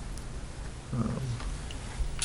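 Quiet meeting-room tone: a low steady hum and hiss, with one short, soft vocal murmur about a second in.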